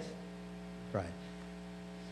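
Steady electrical mains hum from the sound system, a low hum with several steady overtones, and a short vocal sound about halfway through.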